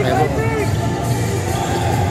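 Basketball arena din during play: crowd chatter and arena music, with a nearby voice briefly at the start.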